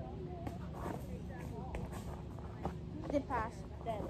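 Badminton racket striking a shuttlecock in a rally: a few sharp clicks spaced about a second apart, with faint voices in the background.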